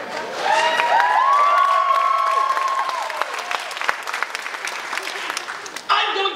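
Theatre audience clapping, with several people whooping in long held calls over the first three seconds; the applause thins out toward the end.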